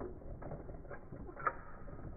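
Plastic clicks, clacks and creaks of Akedo battle-toy mechanisms as the figures' arms are worked in a fight, with a louder clack about one and a half seconds in.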